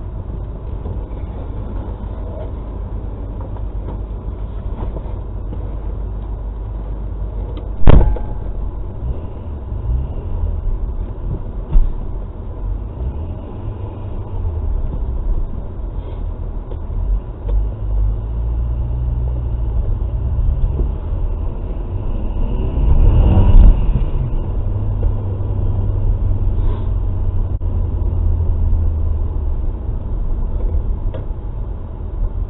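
Car cabin noise from a dash cam while driving slowly: a steady low engine and tyre rumble, with a sharp thump about eight seconds in, a lighter knock a few seconds later, and a brief rise in level a little past two-thirds of the way through.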